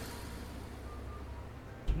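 Quiet background music from the playing countdown video over a steady low hum, with a single low thump near the end.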